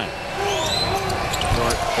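Basketball being dribbled on a hardwood court, a few sharp bounces about midway and later, over a steady arena crowd din.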